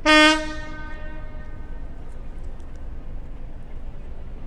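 Horn of a CFR class 060-DA diesel-electric locomotive giving one short blast, its tone fading away over about a second: the signal before the train pulls out of the station.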